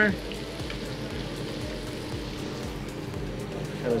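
Fish frying in oil and butter in pans on a gas range: an even, steady sizzle, over a low steady hum.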